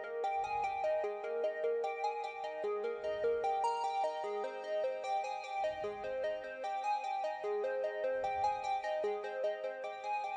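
Synth1 virtual-analog software synthesizer playing a repeating electronic line of short pitched notes that change about four times a second. A deep low sound comes back roughly every two and a half seconds.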